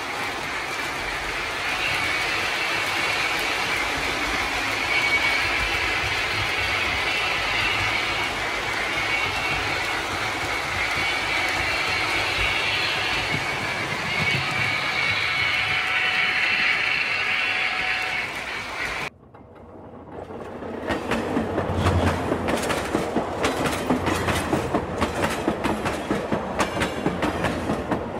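Lionel O scale model trains running on three-rail track, a steady whir of motor and wheels. After a sudden cut about two-thirds of the way in, the sound comes back as a rapid, even clickety-clack of wheels over the track.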